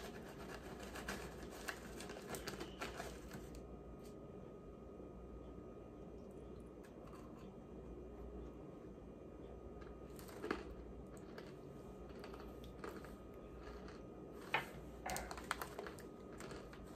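Faint scraping and rustling as a metal spoon scoops powdered tapioca starch out of its paper bag, with a few short, sharp clicks.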